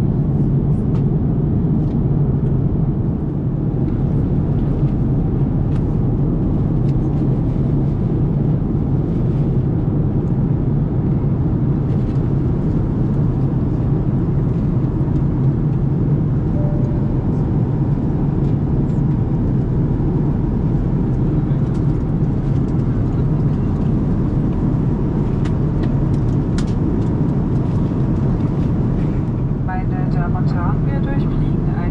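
Steady low rumble of an Airbus A330-900neo's economy cabin in cruise flight, airflow and engine noise holding an even level.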